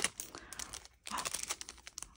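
Clear plastic bag crinkling as it is handled, in irregular crackly bursts with a short lull about halfway.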